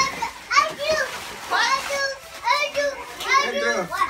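Young children's high-pitched voices: short squeals and calls about once a second, arching up and down in pitch, without clear words.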